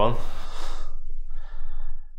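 A man breathes out heavily through the mouth in a sigh that fades away over about a second, followed by faint breathing.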